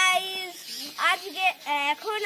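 Young girls singing a repetitive, sing-song phrase in short held notes.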